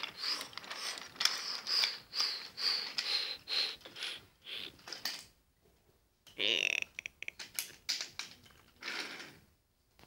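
Wooden toy train pushed by hand along wooden track: the wheels roll and clack in a quick, uneven rhythm for about five seconds, then stop. A few scattered clicks follow.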